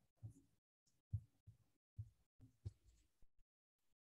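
Near silence broken by faint, irregular low thumps, several a second, that stop a little past three seconds in.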